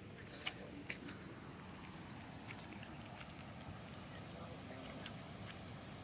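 Quiet outdoor ambience: a faint steady hiss with a few light, scattered clicks.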